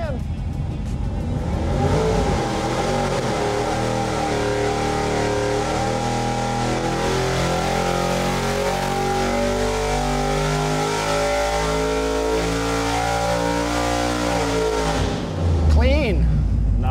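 Carbureted 408 Ford Windsor V8 with a tunnel ram intake and dual 750 carburetors, pulled at full throttle on an engine dyno through a 4,500 to 7,000 rpm sweep. The run drops off near the end.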